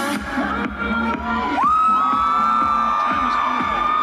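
Dance music from the stage's speakers with a crowd cheering. About halfway through, a long high whoop rises sharply and is held as the loudest sound.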